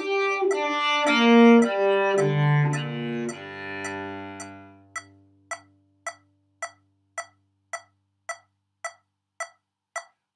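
Cello playing a G minor arpeggio with separate bows, ending on a long low G that rings away about four to five seconds in. After that only steady short ticks are left, a little under two a second.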